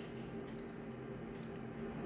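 Office photocopier humming steadily at idle, with a short high beep from its touch panel about half a second in as a button on the screen is pressed.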